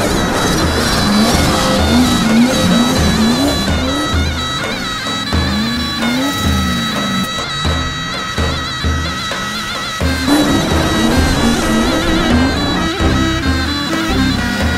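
Turkish folk music on zurna and davul: a shrill, steady reed melody over a regular drum beat. A drifting car's engine revs underneath.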